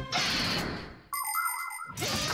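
Cartoon sound effects: a hiss that fades away over about a second, then a brief bright electronic ding with a slightly wavering pitch.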